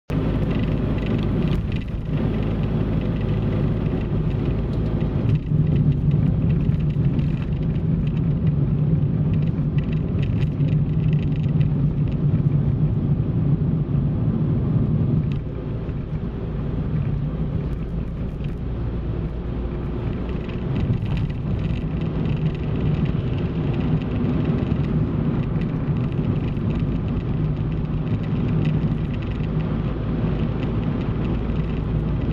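A car being driven along a road: a steady low rumble of engine and tyre noise, easing slightly about halfway through.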